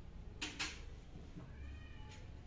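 Two quick clinks of glassware against a metal serving tray, then a short high-pitched cry that rises and holds near the end.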